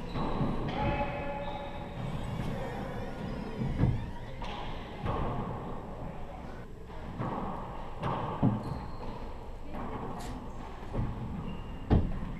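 A handball rally on a four-wall court: the rubber ball smacking players' hands and the walls. There are a few sharp thuds seconds apart, the loudest about four seconds in and at the very end, each ringing off the walls of the enclosed court.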